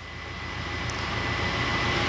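A rushing noise swells steadily louder over the steady low throb of the passenger boat's engine.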